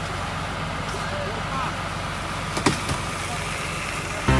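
Fire engine idling with a steady low rumble, faint voices behind it, and one sharp click a little past the middle.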